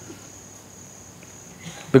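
A pause in speech: low room noise with a faint, steady high-pitched tone.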